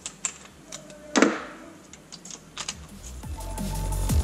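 A few light metal clicks and one louder clank about a second in, from tools and a socket being handled on the engine. Electronic music with a heavy bass beat then fades in near the end and grows louder.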